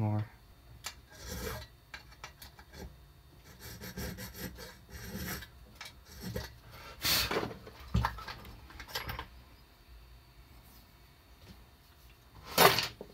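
Small hand file rasping across a key blank clamped in a bench vise, in short, irregular, careful strokes, with the strongest strokes about seven to eight seconds in and fewer near the end. These are the last light passes deepening a cut on a hand-made key.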